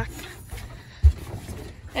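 Low rumbling handling noise with one dull thump about a second in, as the tent trailer's bed support poles are handled and set in place.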